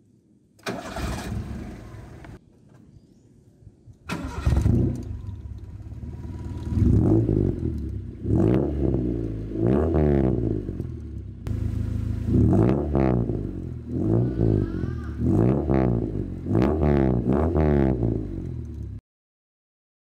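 Honda Civic four-cylinder engine breathing through a large aftermarket exhaust: it is started, then revved in a series of about eight quick blips, each rising and falling back to idle. The sound cuts off about a second before the end.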